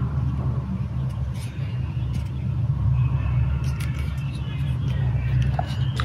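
A steady low hum, with a few faint clicks and taps from a small action camera being handled and turned in the hands.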